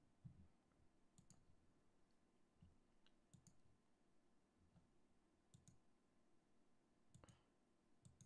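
Faint computer mouse clicks, mostly in quick pairs, about every two seconds over near silence.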